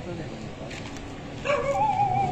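A dog whining, a long wavering high-pitched call that starts suddenly about a second and a half in and is the loudest sound here, over faint voices.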